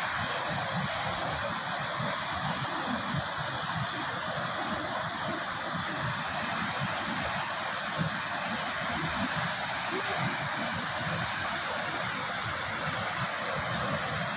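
Whitewater rapids of the Kunhar River rushing steadily over rocks, a continuous even roar of water.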